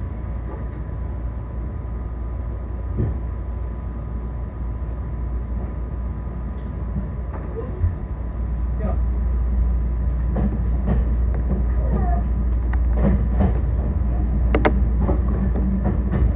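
Electric train heard from inside the car as it pulls away: a steady low running rumble that grows louder about eight seconds in as the train picks up speed, with a few sharp clicks.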